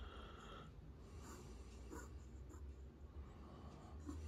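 A fountain pen's medium nib scratching faintly on paper in short downstrokes, pressed hard to test for flex; the nib gives no line variation.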